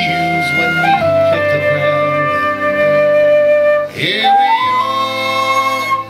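Concert flute playing long held notes over a recorded song's backing track. About four seconds in the flute breaks briefly for a breath, then slides up to a higher note and holds it.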